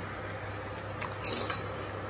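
Chopsticks clinking lightly against a stainless steel wok a few times just after the middle. Under them runs the steady low hum of an induction cooktop.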